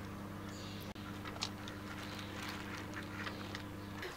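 A few short, quiet calls from ducks (mallards) standing on grass, over a steady low hum.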